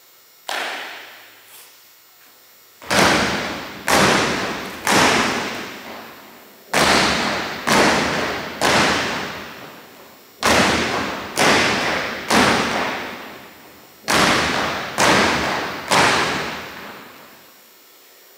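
A drill team's sharp, unison drill strikes in sets of three, about one a second, each ringing on in the echo of a large gym. A single strike opens, then four sets of three follow.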